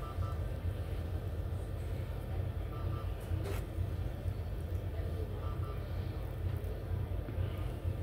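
Steady low hum of hospital room equipment, with a faint short double beep from bedside medical equipment repeating about every three seconds, and a single click about three and a half seconds in.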